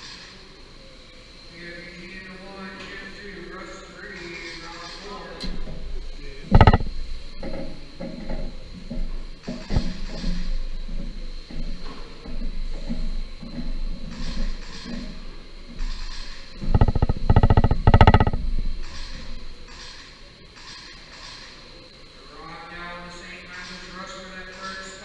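21.5-turn brushless electric RC cars racing on an indoor carpet oval. The sound grows louder from about five seconds in and eases off near the end, with several sharp knocks; the loudest is a quick cluster about 17 to 18 seconds in.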